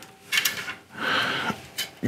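Handling noise from a pane of tempered scanner glass being moved on a tabletop: two brief rubbing, sliding sounds and a light click near the end.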